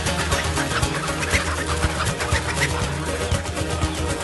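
Background music: an instrumental stretch of an upbeat song about cycling, with a steady drum beat and bass and no singing.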